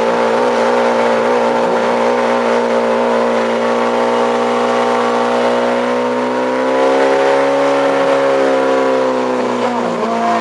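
Portable fire pump engine running flat out with a steady drone as it drives water through the hoses to the jets. The pitch rises slightly about seven seconds in, then eases back.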